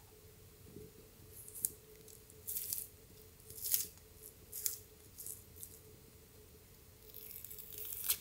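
Orange segments being peeled away from their rind by hand: several short, soft tearing and squelching sounds, each a separate pull, with a longer rustle near the end.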